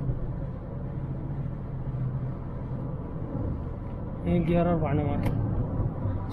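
Cabin noise inside a 2010 Kia Optima with a 2.0-litre four-cylinder engine, cruising at road speed: a steady low rumble of engine and tyres. A man starts talking about four seconds in.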